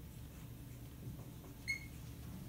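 Marker writing on a whiteboard, with one short high squeak of the marker tip near the end.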